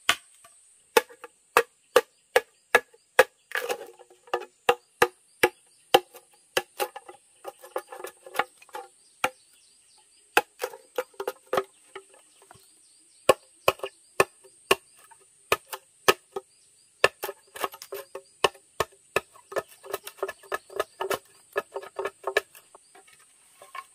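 Machete chopping into a green bamboo tube, sharp strikes about two to three a second, each with a short hollow ring, with a couple of brief pauses near the middle.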